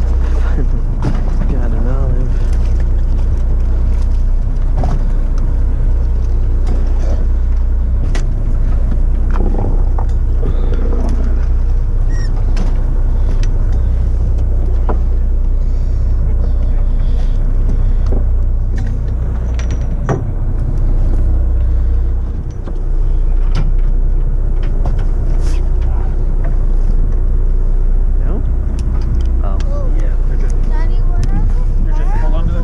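Fishing boat's engine running with a steady low rumble, with other people talking faintly in the background and occasional small knocks and ticks.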